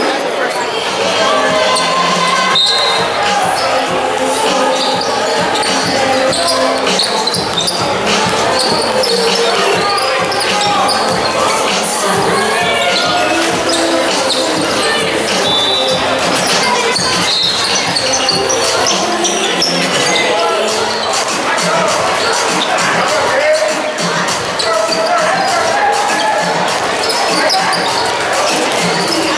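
Indoor basketball game in a large hall: a basketball bouncing on the court amid the steady hubbub of players and spectators talking and calling out, with music playing in the hall.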